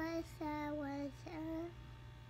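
A child's voice singing a few held notes without words, the middle note dropping slightly in pitch.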